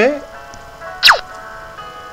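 A short whoosh sound effect about a second in, sweeping quickly downward in pitch, over soft background music of held, steady electronic notes. The tail of a spoken word is heard right at the start.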